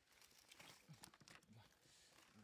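Faint rustling and crackling of dry leaves and soil as hands scrabble among a heap of fish on the ground.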